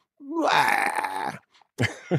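A man's drawn-out vocal groan, about a second long, acted out as an impression of a cartoon dog's wordless noise. Short bits of voice follow near the end.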